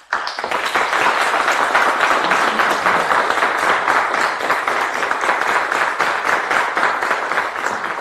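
Audience applauding: many hands clapping at once. It starts all at once and begins to die down near the end.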